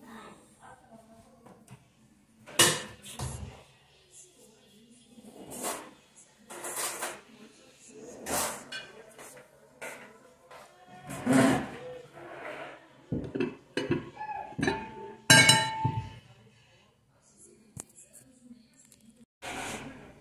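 Glass casserole dish and its glass lid knocking and clinking against a table as the dish is moved and set down. Irregular sharp knocks, the loudest a short ringing clink about fifteen seconds in.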